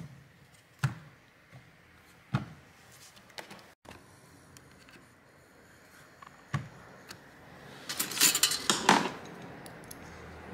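Scattered clicks and knocks of a plastic speaker housing being handled and fitted together, then a short clattering rattle about eight seconds in, the loudest sound.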